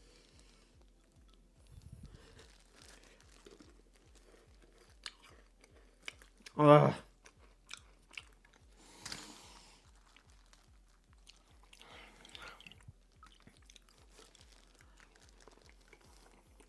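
Faint chewing of a milk-soaked Oreo cookie, with a short voiced hum from the eater about seven seconds in and a breathy exhale about nine seconds in.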